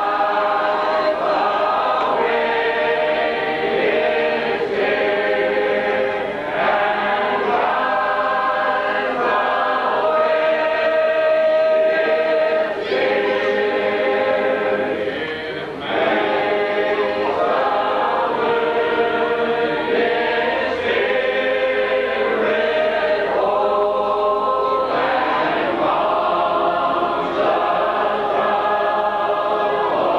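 A congregation of mixed voices singing a hymn a cappella, in long held notes phrase by phrase, with a brief breath between lines about halfway through.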